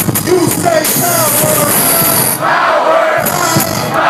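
Live hip-hop track played loud through a club PA, a rhythmic beat with vocals over it and crowd noise from the audience.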